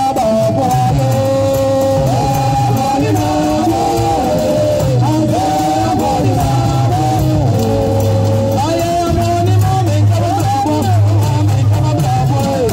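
Adowa music: voices singing a melody, often two lines moving together, over steady drumming.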